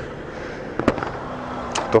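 Steady street traffic noise with a single sharp click about a second in.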